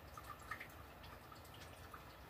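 Near silence: faint room tone with a few soft, scattered ticks.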